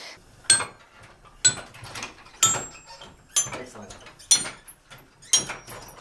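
Chime tower bells played from the lever console one note at a time, about one stroke a second, each note at a different pitch. Every stroke starts with a sharp clunk of the playing lever and wire mechanism, then the bell rings on.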